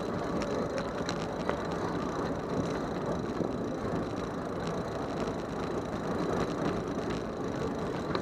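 Bicycle riding on a city street, heard from a bike-mounted camera: steady tyre and road noise with scattered rattles and clicks from the bike and the camera mount.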